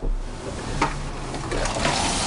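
Water swishing and splashing inside a water tank as a wet cloth is worked over its bottom to soak up the last of the rinse water. The splashing grows louder in the second half.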